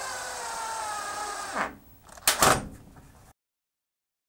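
Power drill driving a screw up through the sled base into a solid-wood fence, its motor whine sinking slowly in pitch as it slows under the load of the screw. The drill stops about a second and a half in, followed by two short knocks, the second one louder, and the sound then cuts off.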